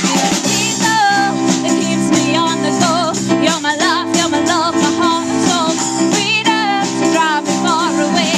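A live pop-rock band playing: electric guitars, a drum kit and keyboard, with a woman singing a melodic line with vibrato over it.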